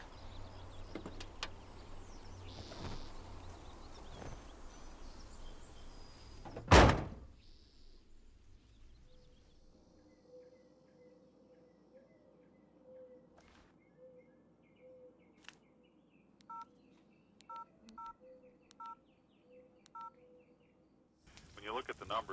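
A single loud slam of a car door shutting about seven seconds in. Later, over a faint steady hum, five short touch-tone telephone key beeps, each two notes sounding together.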